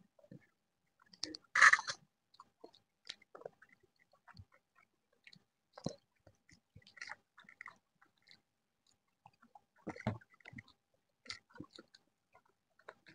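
People eating chicken curry and rice with their hands: chewing, lip smacks and fingers mixing rice on plates, heard as scattered soft clicks. A brief louder rustle comes just before two seconds in, and another short cluster around ten seconds.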